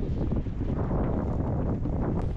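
Wind buffeting the microphone in a steady low rumble, heard on a small boat on a windy, choppy sea.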